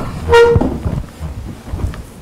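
A vehicle horn giving one short toot, a single steady note about a quarter of a second long, about half a second in.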